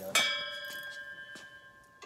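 A metal part or tool is struck once and rings out like a bell, the clang fading slowly over about a second and a half.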